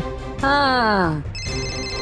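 Mobile phone ringtone starting about one and a half seconds in: a high electronic ring in quick, even pulses. Just before it comes a drawn-out tone falling in pitch.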